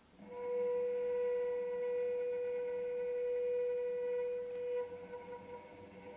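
A single sustained instrumental note with clear overtones, held steady for about four and a half seconds and then fading away.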